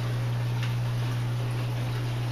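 Steady low electrical hum from the aquaponics system's running equipment (water and air pumps, grow-light fixtures), with a faint wash of moving water underneath.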